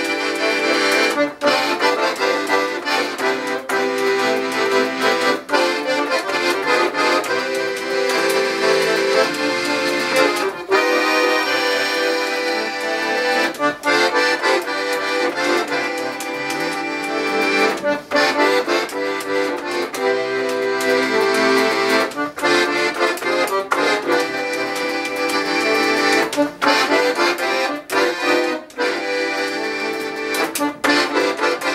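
Paolo Soprani piano accordion played solo: a melody on the right-hand keyboard over left-hand bass and chord buttons, with short breaks between phrases.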